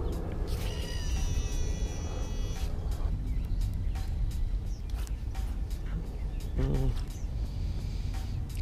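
A baitcasting reel's spool whining as line pays out on a cast. It is a steady, high-pitched whine that starts about half a second in and lasts about two seconds.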